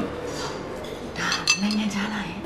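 Chopsticks and tableware clinking against plates and bowls during a meal, with a cluster of sharp clinks in the second half, the loudest about one and a half seconds in.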